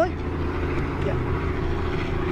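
Steady low engine drone with a faint steady tone above it, running evenly throughout.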